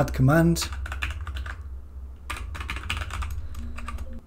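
Computer keyboard typing: quick runs of key clicks with a short pause about two seconds in, over a steady low hum.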